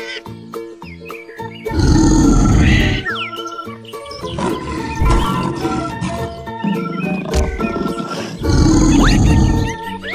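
Children's background music with two loud lion roars, one about two seconds in and one near the end, each about a second long.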